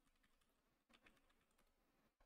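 Near silence with faint computer keyboard typing: a few scattered keystrokes, with a short cluster about a second in.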